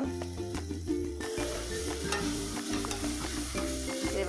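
Onion-tomato masala sizzling in a steel pressure cooker while a metal spatula stirs and scrapes across the pan. The sizzle gets louder about a second in.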